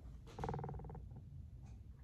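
A man's short, quiet, creaky hum lasting under a second, a hesitation sound between phrases, then faint room tone.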